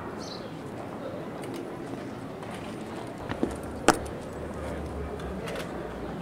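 Open-air crowd ambience: a low murmur of distant voices with a sharp click about four seconds in.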